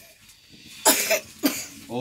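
A man coughs twice in quick succession, the first cough about a second in and a shorter one half a second later.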